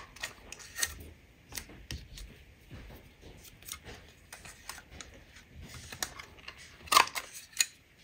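Light clicks and rustles as a plastic Banners Pick a Punch and cardstock strips are handled, with a few louder sharp clicks about seven seconds in.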